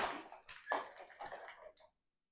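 Faint handling noises from a resistance-band rig being taken up by its wooden bar: a short rush of noise at the start, then scattered soft knocks and rustles.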